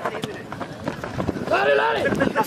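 A person shouting a loud drawn-out call near the end, over background voices and scattered short knocks.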